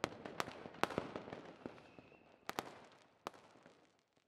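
Fireworks display: aerial shells bursting in a fairly faint series of irregular sharp cracks over a crackling fizz, thinning out and dying away near the end.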